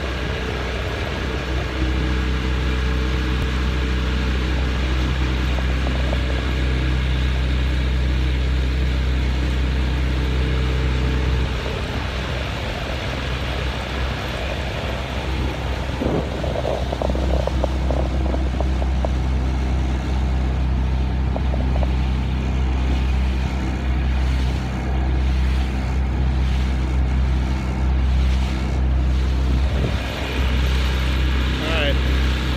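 A 25 hp outboard motor running steadily, pushing a small jon boat along at speed. Its note drops for a few seconds about twelve seconds in, then comes back up.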